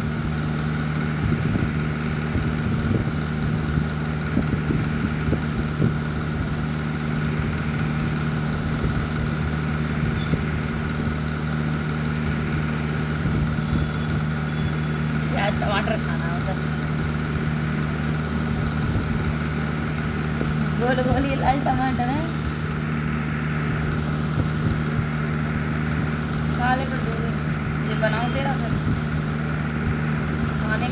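A steady, unchanging machine hum, with faint voices breaking in briefly a few times from the middle onward.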